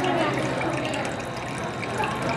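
Water trickling and running steadily in a shallow pond.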